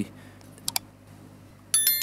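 Subscribe-button animation sound effect: two quick mouse clicks, then a bright bell ding near the end that rings on briefly.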